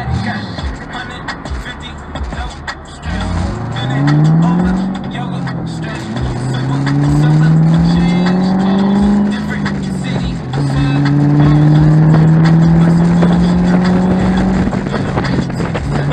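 A Ford Mustang's engine accelerating hard through the gears. It pulls up in pitch three times, with a drop at each upshift between, and the last pull is the longest. It is heard from the open-top cabin, with music from the car stereo underneath.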